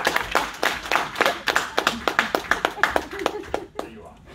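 Small audience applauding, with one person's clapping close and loud over the rest. The applause dies away shortly before the end.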